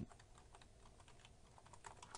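Faint typing on a computer keyboard: a quick run of soft keystrokes as a word is typed.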